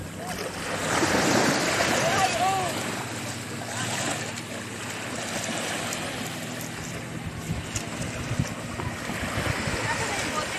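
Small waves washing up onto a sandy shore in a steady hiss, with short voice-like calls about two seconds in.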